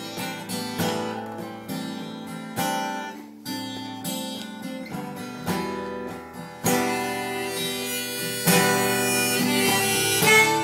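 An Ibanez copy of a Gibson Hummingbird acoustic guitar, in double drop D tuning, strummed in slow, evenly spaced chords. A harmonica played from a neck holder comes in over it after about six and a half seconds, and the playing grows louder.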